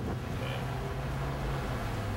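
Ford pickup truck's engine and road noise heard from inside the cab while driving: a steady low drone.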